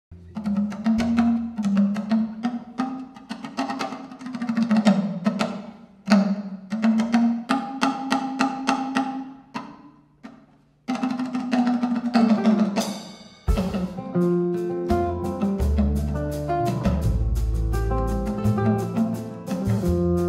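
Live band music: for the first thirteen seconds or so, drum and percussion phrases broken by two short pauses. Then, about two-thirds of the way in, bass and guitars join for the full band.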